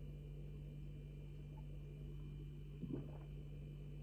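A man drinking beer from a glass, almost silent over a steady low hum, with one soft short sound about three seconds in.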